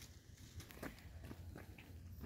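Faint footsteps on a paved path, a few irregular soft steps over a low steady rumble.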